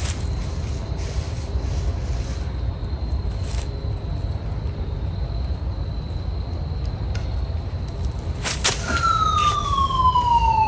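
A steady low rumble with a few soft knocks. About nine seconds in, a single clear whistle-like tone slides steadily downward for nearly two seconds.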